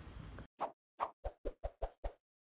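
Outdoor background noise cuts off about half a second in. An outro-card sound effect follows: about six short pops, coming closer together.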